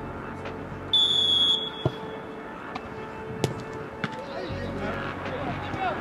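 Referee's whistle: one short, shrill, steady blast about a second in, signalling the free kick, followed by a few scattered sharp knocks.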